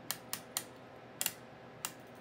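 Detent clicks of the Tektronix 545A's Time Base B TIME/CM rotary switch being turned step by step: about six sharp clicks, unevenly spaced.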